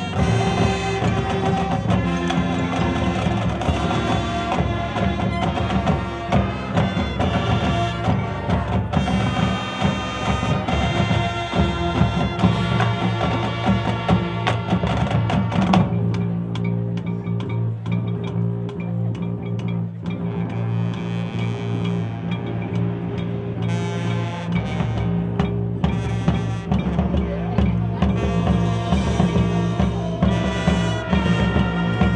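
Marching band playing live on the field: brass, saxophones, marimbas and drums. About halfway through, the full band thins to a lighter passage over sustained low notes, and the fuller sound comes back in near the end.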